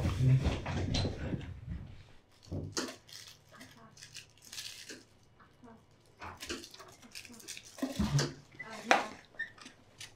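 Shuffling footsteps and scattered light knocks and clatter of several people moving about and handling objects, busiest in the first two seconds, with a sharper knock near the end.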